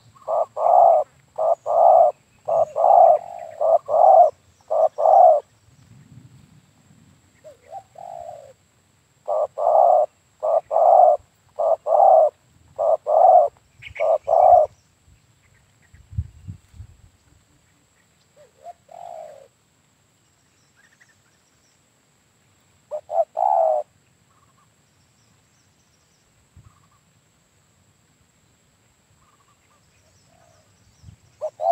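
Spotted dove cooing: a run of about nine short coo notes, then another such run after a pause of a few seconds, followed by a few single, shorter calls with quiet gaps between them.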